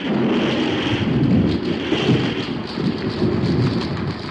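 Radio-drama sound effect of a close lightning strike and thunder crash. It bursts in suddenly and keeps on as a loud, crackling rumble.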